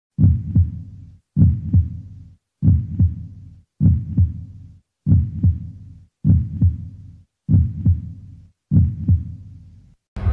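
Deep double thumps in a slow, steady beat like a heartbeat, eight in all, one about every 1.2 seconds, each fading out before the next.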